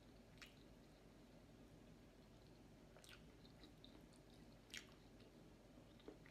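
Faint close-up chewing of a hand-eaten meal, with three brief crisp clicks or crunches over a steady low room hum; the last click is the loudest.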